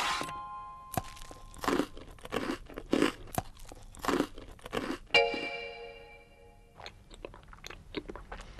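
Crunching and chewing sounds of food being bitten and munched, a short crunch roughly every half second, with a held musical chord about five seconds in.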